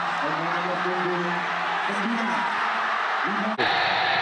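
Steady stadium crowd noise from a football broadcast, with faint voices under it. An abrupt cut near the end switches to a different, brighter crowd sound.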